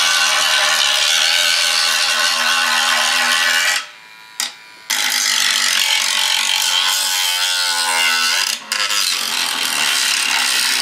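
Dremel rotary tool with a cutting disc grinding through an animatronic's fiberglass face mask at full speed. It cuts out briefly about four seconds in and starts again a second later, and its pitch wavers near the end as the disc bites into the shell.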